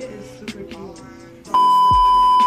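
Background music, then about one and a half seconds in a loud steady high beep tone cuts in and holds for about a second. It is a censor-style bleep edited over the audio.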